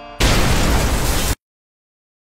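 Explosion sound effect: a loud burst of noise lasting about a second that starts suddenly and cuts off abruptly into silence.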